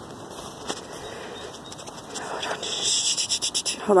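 Rustling and scratching handling noise as the phone camera is moved, louder and scratchier in the second half with a quick run of short strokes just before speech.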